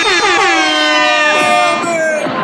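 A loud, horn-like electronic tone held for about two seconds, sliding slowly down in pitch and cutting off near the end.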